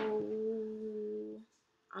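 A woman's voice holding one long hum at a steady pitch, a hesitation filler between words, which stops about one and a half seconds in.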